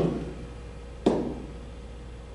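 A single sharp tap about a second in, a hand striking the interactive whiteboard's surface to pick a tool, over a steady low hum.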